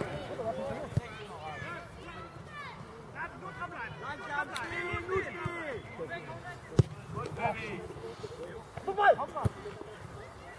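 Distant shouts and calls of players and spectators across an open football pitch, with sharp thuds of the ball being kicked, one about a second in and two more in the second half, the loudest near seven seconds.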